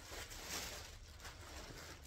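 Plastic bag and cloth rustling as a garment is pulled out of a black plastic bag, loudest about half a second in.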